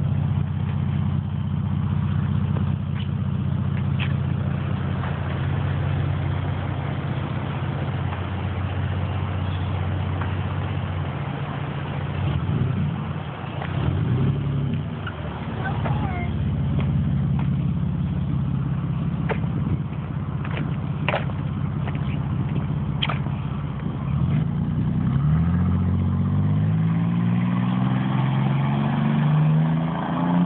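Toyota 2JZ-GTE turbocharged inline-six swapped into a 1990 Jaguar XJS, running at a steady low idle while the car creeps around the lot, with the revs briefly changing around the middle. Near the end the engine pitch climbs steadily as the car accelerates away.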